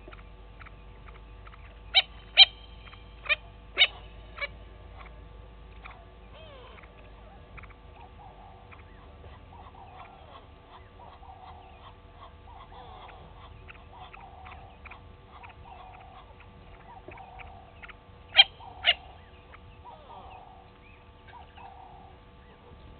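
Natal spurfowl calling: a run of five short, loud, sharp notes about two seconds in and two more near the end. Faint chirps and soft clucking calls sound in between.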